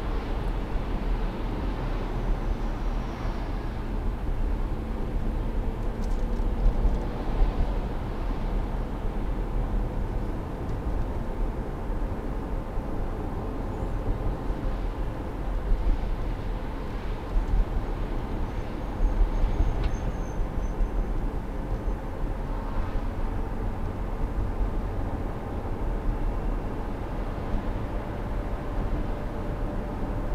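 Road and engine noise inside a moving car's cabin at highway speed: a steady low rumble with a faint constant hum.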